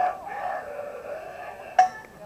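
Players' voices calling out on a softball field, then a single sharp metallic clink near the end.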